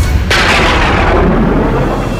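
A loud booming impact sound effect about a quarter of a second in, dying away over a second or so, over a low drone from the dramatic background score.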